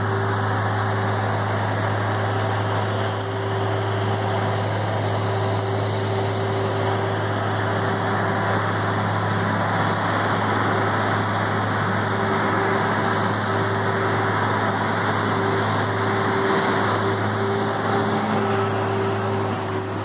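A large engine of heavy site machinery running steadily at constant speed: a low, even hum with a steady tone above it.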